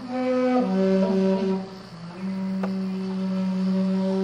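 Jinashi shakuhachi (Japanese bamboo flute) music: slow, long held notes, stepping down in pitch about half a second in, with a brief dip and a new held note near the middle.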